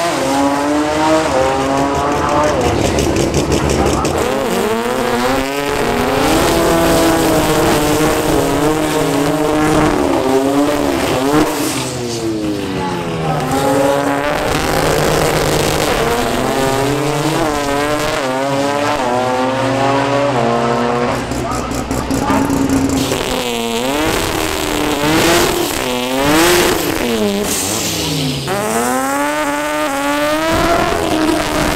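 Toyota Starlet drag cars making hard passes down the strip, one after another. Their engines rev up in repeated rising sweeps, dropping back at each gear shift and climbing again, with tyre noise near the end as a burnout starts.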